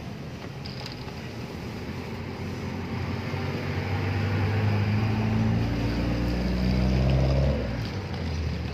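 A motor vehicle's engine running close by, growing steadily louder over several seconds and then falling away abruptly near the end. Under it, a loaded shopping cart's wheels rattle over asphalt.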